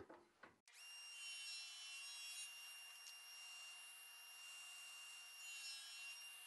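Near silence: from about a second in, a very faint steady whine from a table saw making a 45-degree cut, its sound turned almost all the way down.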